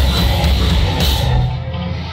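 Heavy metal band playing live: distorted electric guitar, bass and drums with cymbals. About one and a half seconds in, the cymbals and drums drop out and the sound thins to a quieter low ringing note, a brief break in the song.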